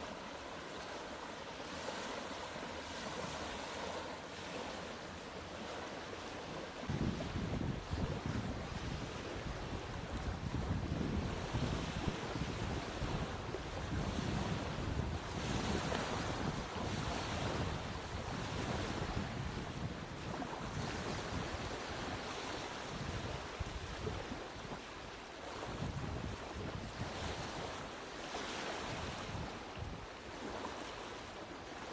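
Small waves lapping and breaking on a pebbly river shore, with a steady wash of wind. From about seven seconds in, wind gusts buffet the microphone with an uneven low rumble.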